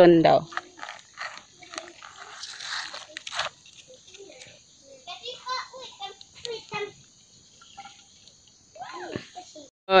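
Faint, scattered talk from people nearby, with pauses between short utterances.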